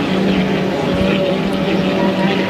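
Racing hydroplane with a 1.5-litre inboard engine running flat out at racing speed: a steady, unbroken engine drone held at one pitch.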